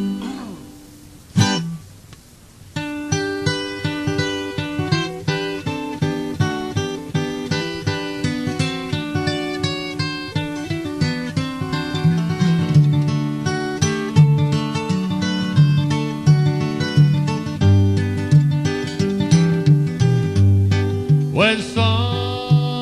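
Acoustic guitar capoed with two capos (a double-capo setup): one strum about a second in, then a steady picked instrumental intro from about three seconds in.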